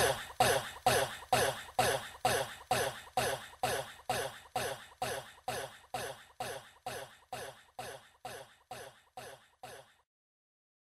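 A short vocal snippet repeated as an echoing stutter at the end of a dance remix, about two and a half repeats a second, fading steadily until it stops just before the end.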